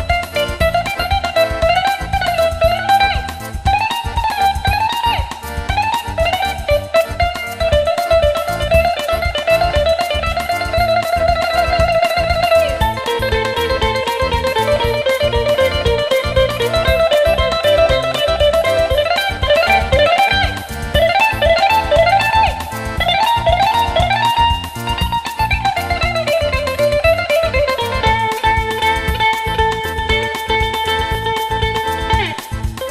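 A Greek bouzouki played solo with a pick, an instrumental melody of quick runs and fast repeated notes.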